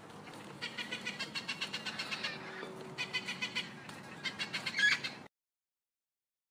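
Parrot calls: three spells of quick, evenly repeated chirps over a steady hiss, cutting off suddenly about five seconds in.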